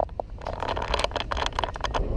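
Motor scooter engine running on the road, a steady low rumble with scattered clicks and crackles and a sharp click at the very start.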